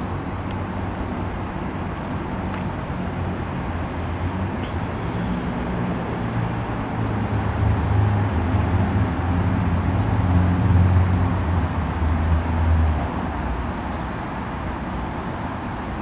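Steady street traffic noise, with a vehicle's low engine rumble swelling up about halfway through and fading a few seconds later as it passes.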